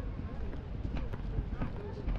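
Street ambience: voices of passers-by talking, with footsteps clicking on the ground a few times a second and a low rumble underneath.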